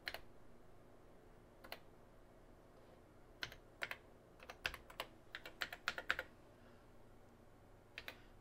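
Keystrokes on a TRS-80 Model 4 computer keyboard: a few single clicks, then a quick run of about a dozen keystrokes between three and a half and six seconds in.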